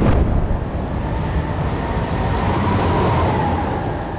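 Dirt bike engines running in a heavy, steady low rumble, with a faint engine whine that rises a little and falls.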